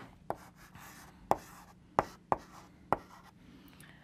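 Chalk writing "50%" on a blackboard: about five sharp taps and short strokes spread over three seconds.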